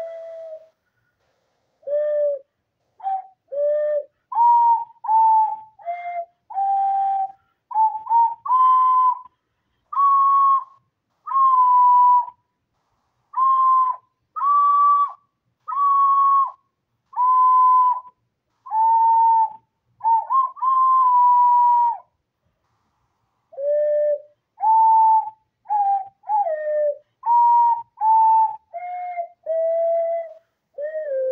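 A person whistling a slow melody: single pure notes, each held about half a second to a second, with small slides into and out of them, and a pause of a second or so about three-quarters of the way through.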